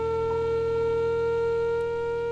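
A wind instrument holds one long, steady note while piano notes ring beneath it, with a piano note change about a third of a second in.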